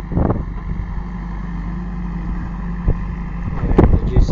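Diesel engine of a JCB backhoe loader running steadily while it digs, with a few short knocks about a third of a second in, near three seconds and near the end.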